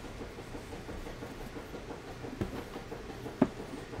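Soft handling noise of a cardboard trading-card box and its sleeve: two light taps about a second apart in the second half, over a steady low background hum.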